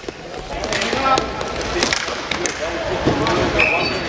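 Players and crowd shouting in an echoing indoor inline hockey rink, with a few sharp clacks of sticks and puck against the floor and boards.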